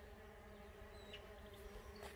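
Faint, steady buzzing of solitary bees flying around their nesting tubes.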